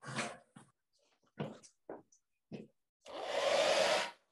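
Hair dryer blowing on a wet acrylic painting to dry it. The sound comes first in a few short, broken bursts, then runs steadily for about a second near the end before cutting off suddenly.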